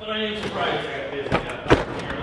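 Indistinct voices, with two sharp knocks in quick succession about a second and a half in.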